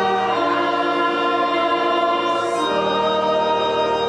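A small church congregation singing a slow hymn from their hymnals with organ accompaniment, long held notes changing about every two seconds.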